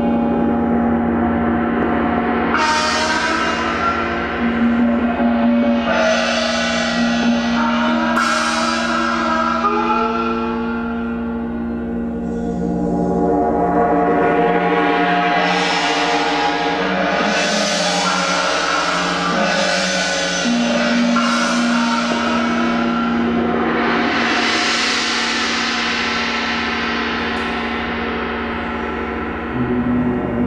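Gongs and tam-tams ringing in a dense, sustained wash over a steady low hum. Fresh strokes every two to four seconds send bright, shimmering swells up through the sound.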